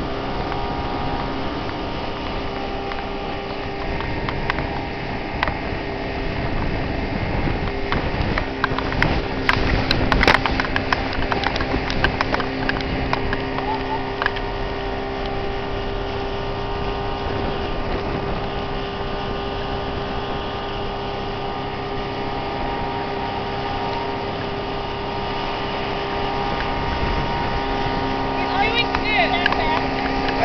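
A 125 hp Mercury two-stroke outboard motor running steadily at planing speed under load, towing, over a rush of wind and water, with a patch of sharp crackles about ten seconds in.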